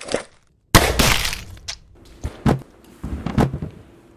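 A sudden loud gunshot about a second in with a long decaying tail, followed by several smaller sharp cracks and knocks.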